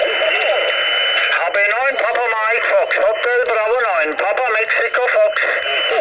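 Amateur radio stations answering a CQ call over the transceiver's speaker. Several thin, band-limited voices overlap at once, as in a pile-up of callers. A steady high whistle sits over the voices at the start and again near the end.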